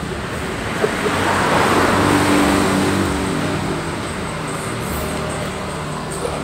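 A road vehicle passing by: engine and road noise swell to a peak about two seconds in, then slowly fade away.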